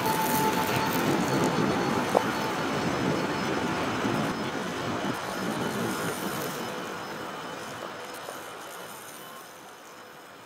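A steady, dense rumbling noise with a sharp click about two seconds in, fading out gradually over the last few seconds.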